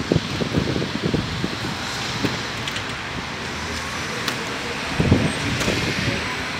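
Outdoor street ambience: a steady hiss of road traffic, with low rumbling surges on the microphone in the first second or so and again about five seconds in.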